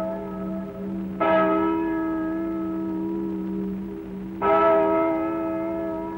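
A church bell tolling: two strokes, about a second in and again about three seconds later, each ringing on with a long, slowly fading hum that carries over between the strokes.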